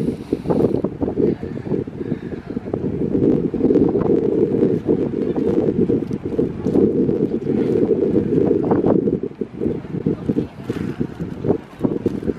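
Wind blowing across the camera microphone: a loud low rumble that eases a little near the end.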